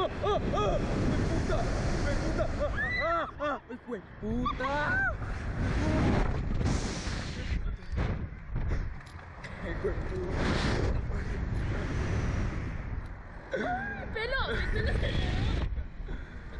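Wind rushing and buffeting the microphone as the riders are flung up and down on a SlingShot reverse-bungee ride, with screams and yelps that rise and fall in pitch, in bouts near the start, around three and five seconds in, and again near the end, mixed with laughter.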